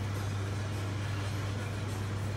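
Steady low hum with an even background hiss, unchanging throughout.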